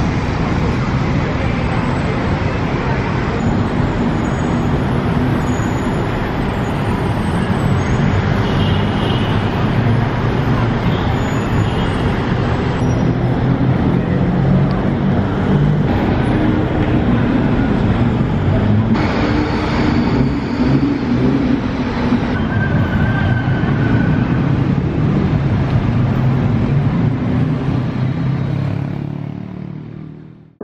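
Steady city road traffic: many cars and other vehicles running on a busy multi-lane road, a continuous low noise that fades out near the end.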